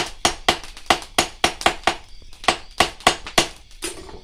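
Blacksmith's hand hammer striking metal on an anvil in quick, even blows, about four to five a second, with a short pause a little past the middle.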